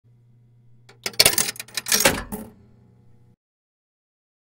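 A burst of mechanical clicking and clattering for about a second and a half, over a steady low hum. It stops abruptly about three seconds in.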